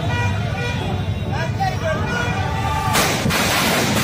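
Crowd voices with some steady high tones, then about three seconds in a string of firecrackers starts going off in rapid, loud cracks.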